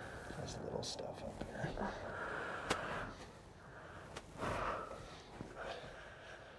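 A person breathing deeply in and out while pressure is applied to the back, with two short sharp clicks in the middle of the stretch.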